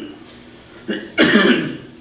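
A man coughs once, a little over a second in.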